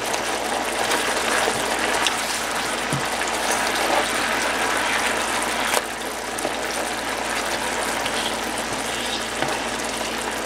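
Soy glaze bubbling and sizzling in a nonstick skillet around pieces of fried chicken breast, a steady crackling hiss as the sauce reduces. A few light clicks come as the chicken is moved with plastic tongs.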